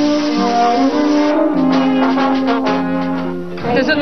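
Brass band playing several sustained notes together that change pitch every second or so, stopping shortly before the end.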